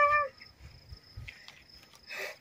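A girl's short voiced exclamation at the very start, falling in pitch, then a low outdoor background with a faint brief rustle about a second and a half in.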